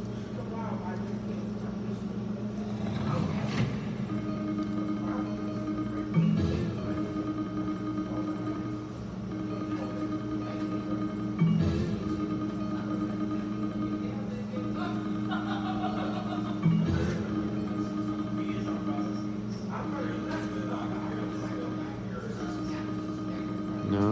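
IGT Cleopatra Keno video keno machine playing its free games: chiming electronic tones repeat over a steady electronic drone. A short sweeping sound comes every few seconds as the draws run.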